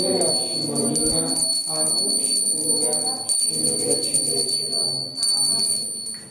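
Altar bells jingling and ringing on steadily over a man's slow chanted phrases, as at the Pax and elevation of the Lutheran communion liturgy.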